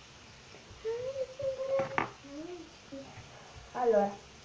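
A girl humming a few wordless notes, with one sharp click about halfway through.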